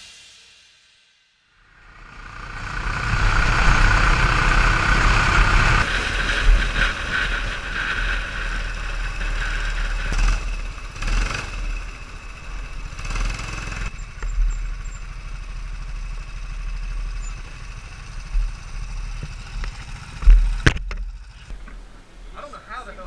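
Go-kart engine running on the track, strongest in the first few seconds and then lower as the kart slows into the pit lane, with wind noise on the microphone. A single sharp thump near the end.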